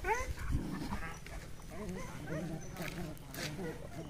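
Dogs' yelps and whines from a short scuffle, with a low thump about half a second in, then fainter whining calls that die away.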